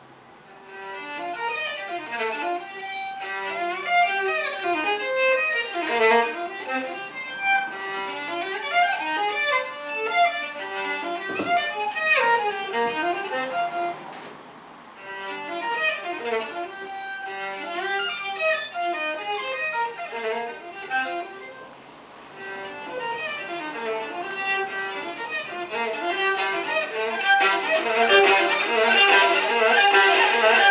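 Solo violin playing a busy passage of quick bowed notes and slides, easing off twice and growing louder near the end.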